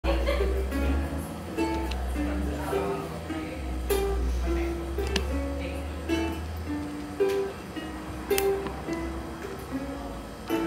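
Ukulele played solo as a song's instrumental intro: a melody of picked single notes, each ringing and fading, with a low rumble underneath for stretches.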